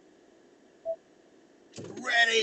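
Faint steady hiss inside a car cabin, broken by a single short beep about a second in; a man's voice starts loudly near the end.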